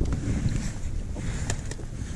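Wind buffeting the microphone as a steady low rumble, with a few light clicks in the second half.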